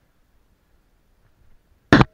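A single loud, sharp knock near the end, with a brief ring after it: hard climbing equipment striking the rock face close to the camera.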